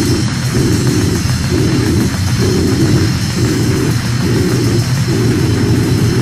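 Heavily distorted hardcore punk music: a fuzzed-out guitar and bass riff pounding a figure that repeats about twice a second, with no vocals.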